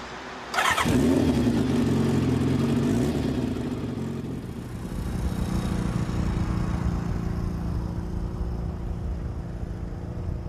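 Kawasaki ZZR motorcycle engine catching with a sudden burst about half a second in, then running steadily as the bike moves off along the street.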